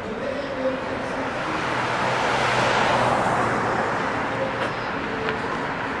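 Road traffic on a city street: a car drives past close by, its tyre and engine noise swelling to a peak about halfway through and then fading, over a low steady hum.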